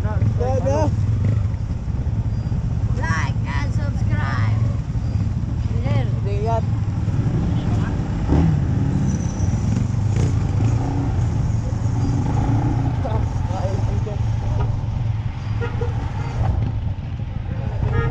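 Motor scooter engine running steadily at idle and low speed, a constant low hum, while people nearby talk over it.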